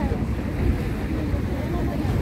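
Wind buffeting the microphone aboard a boat under way on a lake, a steady low rumble with water noise beneath it.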